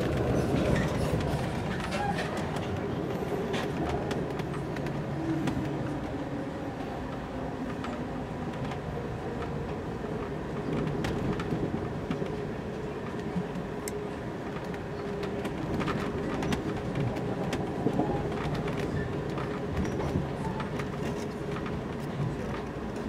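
Amtrak Coast Starlight passenger train running along the track, heard from inside the car: a steady rumble with scattered clicks and knocks from the wheels and car.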